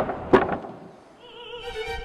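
Trailer soundtrack: operatic music cut by two loud thuds in quick succession at the start, which ring away into a quiet pause before a faint wavering voice of the singing comes back in near the end.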